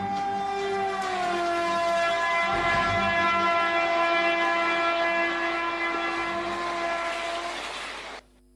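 Train horn sounding one long held blast that drops slightly in pitch about a second in, over the running noise of a train, fading out near the end.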